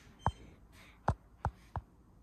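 Four light knocks, irregularly spaced, as a truck door handle is set down and shifted on a desk.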